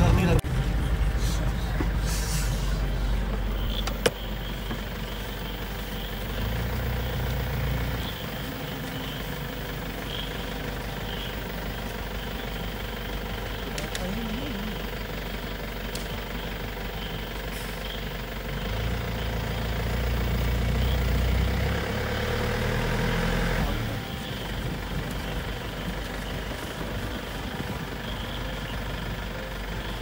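Safari vehicle's engine running at low speed, idling and creeping forward while stopped near animals on the road, with a couple of brief rises in engine level, the longest about 19 to 24 seconds in.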